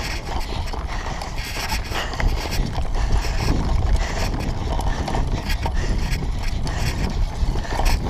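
Mountain bike ridden over bumpy grass, heard from a handlebar-mounted camera: a steady low rumble of wind and tyre vibration with constant rattling and knocking from the bike.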